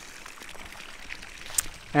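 Steady, even hiss of outdoor background noise, with one faint click about one and a half seconds in.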